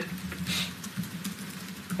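Quiet pause of room or line background: a faint steady low hum under a soft hiss, with a brief faint breathy hiss about half a second in.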